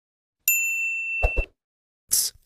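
A notification-bell 'ding' sound effect from a like-subscribe-bell button animation: one bright, steady ring starting about half a second in and lasting about a second, with two soft thumps just before it stops.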